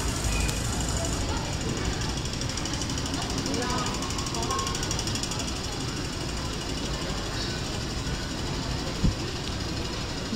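Busy metro station concourse ambience: a steady rumble and hum with indistinct voices of passers-by, and one sharp knock about nine seconds in.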